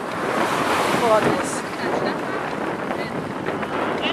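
Wind rushing over the microphone of a camera carried on a moving bicycle, a steady loud noise, with a faint voice about a second in.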